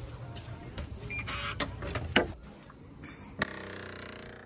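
Hotel-room door handle and lock being worked: several small clicks and a rattle, then a sharp click a little after three seconds in, followed by a drawn-out tone like a creak.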